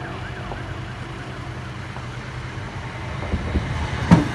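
Level crossing warning alarm yelping, a rising-and-falling tone repeating about three times a second that fades after a couple of seconds, over the low rumble of an approaching passenger train. The rumble grows louder near the end, with knocks and clatter as the train comes alongside.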